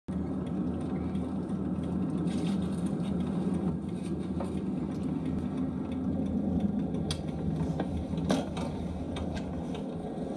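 Steady low road and engine rumble inside the cabin of a moving vehicle, with a couple of short clicks about seven and eight seconds in.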